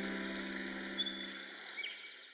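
A piano chord dying away at the end of a piece, over a forest ambience with a few short bird chirps in the second half.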